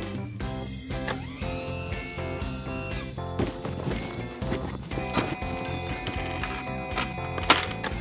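Cartoon background music with short clicks and clanks of mechanical sound effects, and a sharp hit about seven and a half seconds in.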